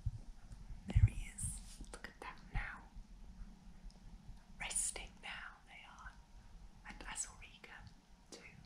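A woman whispering softly in short scattered phrases, with a single knock about a second in.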